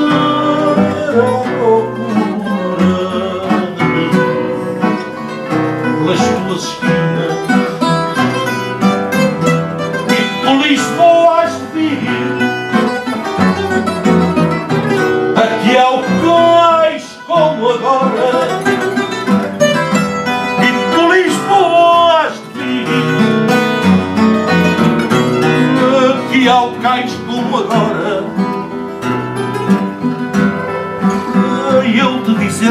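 Live fado accompaniment: a guitarra portuguesa carrying a plucked, ornamented melody over classical guitars and a bass guitar.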